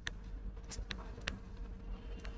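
Faint steady buzzing hum, with a few light taps from a stylus writing on a tablet screen.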